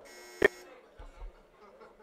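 A faint electronic buzzer tone lasting about half a second, with a sharp click about half a second in, then low room noise.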